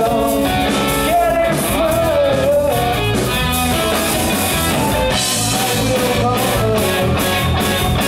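Indie rock band playing live: distorted electric guitars, bass guitar and drum kit, with a man singing lead over the first few seconds and again near the end.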